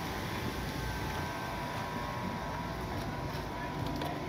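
Steady mechanical background hum with a few faint steady tones, even throughout.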